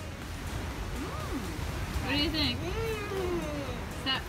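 Wordless tasting sounds from a few people, drawn-out 'mmm' and 'ooh' calls that slide up and down in pitch, the highest and loudest about halfway through, over a steady background hiss.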